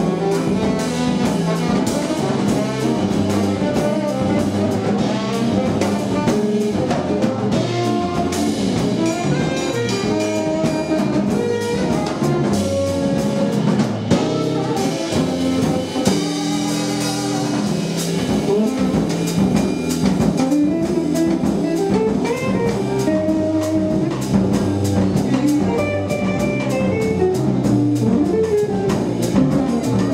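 Jazz quartet playing live: tenor saxophone, guitar, double bass and drum kit. A melody line moves over a walking bass, with cymbals ticking steadily throughout.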